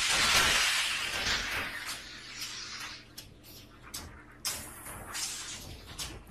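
Sound effect from an anime soundtrack: a sudden loud rushing hiss that fades over about two seconds, followed by softer noise and scattered sharp clicks.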